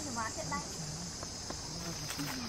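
A steady, high-pitched drone of insects, with brief faint voices in the first half second.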